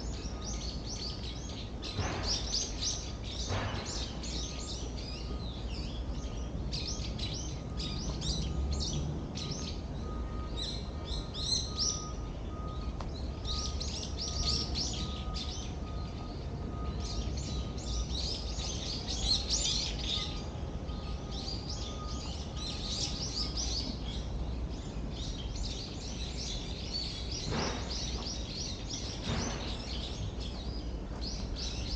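Small songbirds in the trees chirping and twittering, many short overlapping calls all through, over a low steady background rumble. A faint thin steady whine runs under them and stops about two-thirds of the way in.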